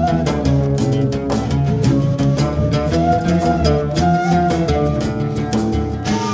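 Live Middle Eastern ensemble playing an instrumental passage: oud and other plucked strings carrying the melody over hand percussion with a quick, steady beat.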